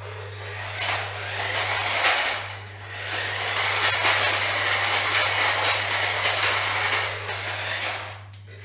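VTech Switch & Go Dinos remote-control Bronco triceratops toy car driving across a tiled floor: its small electric motor and gears whirring and its plastic wheels rattling, with many sharp clicks. It starts about a second in and eases off briefly at about two and a half seconds.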